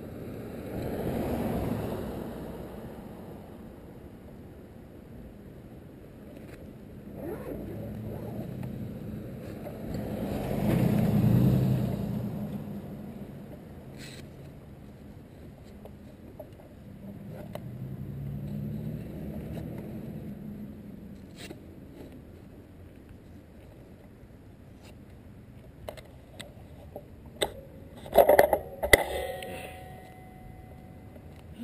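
Cars passing on the street three times, each a swell of road noise that rises and fades over a few seconds. Near the end, a short run of sharp clicks and knocks as the bike is handled.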